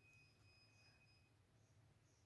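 Near silence: room tone with a faint low hum and a faint, thin, steady high tone that stops after about a second.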